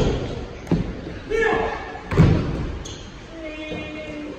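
Feet landing and running on padded parkour boxes: three dull thuds, at the start, under a second in and about two seconds in, the last the loudest, with voices calling in a large hall.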